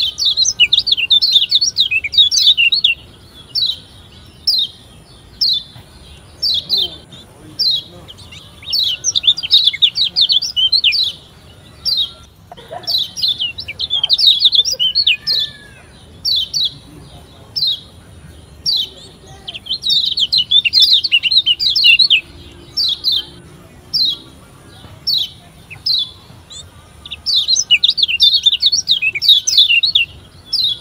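Lombok yellow white-eye (kecial kuning, a Zosterops) singing high, fast chirping phrases in dense bursts, with single chirps about once a second between them. It is a recorded lure song (pancingan), played to set kept white-eyes singing.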